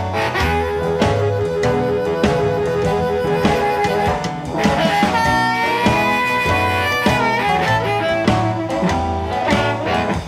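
Blues band playing an instrumental passage with no singing: a lead instrument holds long notes and slides up in pitch about halfway through, over a steady bass and drum beat.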